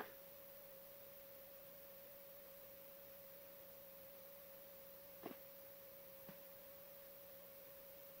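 Near silence: a faint, steady single-pitched tone with a lower hum under it, and two soft clicks about five and six seconds in.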